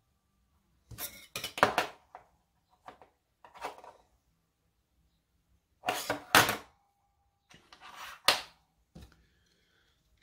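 Small machined aluminium blocks and a steel engineer's square knocking and clinking against a stainless steel bench top as they are handled and lined up, in several short clusters of sharp taps with quiet between them.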